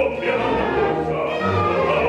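Classical orchestra with strings accompanying operatic singing, a man's voice among the singers.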